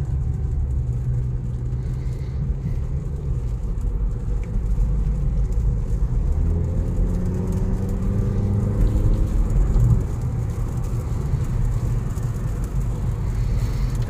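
Mazda 6 four-cylinder engine and road noise heard from inside the cabin: a steady low rumble, then about six seconds in the engine note climbs in pitch as the car accelerates hard, easing off around ten seconds in.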